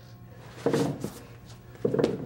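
Two heavy thumps on a wooden stage bench, about a second apart, each with a short ring after it.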